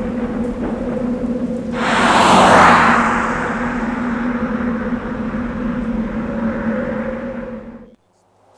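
Logo-intro sound design: a steady low synthetic drone holding two pitches, with a loud whoosh swelling in about two seconds in and dying back down. The drone fades out near the end.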